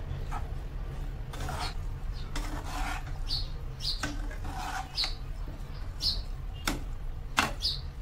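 Silicone spatula stirring and tossing macaroni and vegetables in a nonstick frying pan: repeated short scraping strokes, about one or two a second, some with a brief squeak, over a steady low hum.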